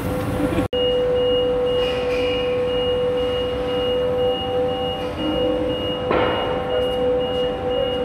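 Ride-on industrial floor sweeper running with a steady high whine over a rumble while its high-dump hopper is raised to tip sawdust out. The sound cuts out for an instant just under a second in, and there is a short rush of noise about six seconds in.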